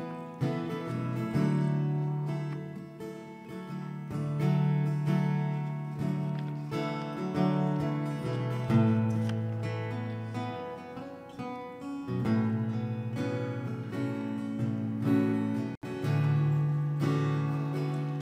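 Electric guitar and bass guitar playing soft, slow sustained chords over a bass line that changes every second or two. The sound drops out for an instant near the end.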